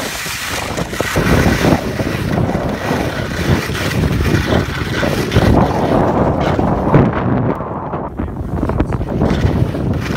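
Loud, gusting wind rush on the microphone of a handheld camera while skiing downhill, with skis sliding over the snow underneath.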